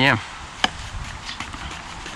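A paintbrush being worked over a combo guitar amplifier's cabinet: one sharp knock about half a second in, then a few faint light ticks.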